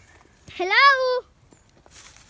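A single shouted "hello!" in a high voice, rising in pitch and then held for a moment.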